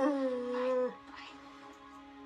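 A person's high, held whine of excitement, voiced through hands held over the mouth. It lasts about a second and drops in pitch as it ends, over soft background music.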